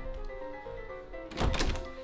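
A door handle clunking and an interior door being pushed open, a short loud knock about a second and a half in, over background music.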